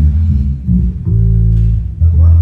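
Electric bass guitar being plucked, a few low notes each held for half a second or more, with a short break before a new note about a second in.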